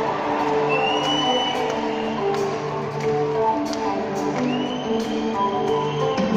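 Live band starting a slow song intro of sustained chords changing pitch in steps, with two long whistles from the audience over it.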